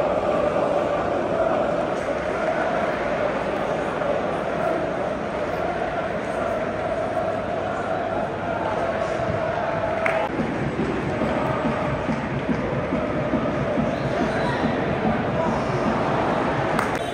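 Football stadium crowd singing a sustained chant, many voices holding a steady line. About ten seconds in the chant breaks up into a rougher, more broken crowd noise.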